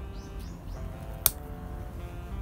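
A single sharp snip of bonsai pruning shears cutting through a Japanese maple shoot about a second in, over soft guitar background music.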